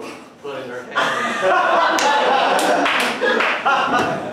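Live audience applauding, with crowd voices mixed in, breaking out about a second in and carrying on loudly.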